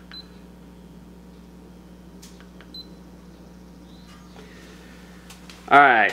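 Two short high beeps from a handheld laser distance measurer taking a reading, about a fifth of a second in and again near three seconds, over a steady low hum and a few faint clicks.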